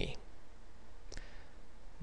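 A single computer mouse click about a second in, over a faint steady low hum.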